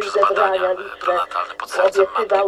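Speech only: Polish talk from a radio broadcast, with a faint steady hum underneath.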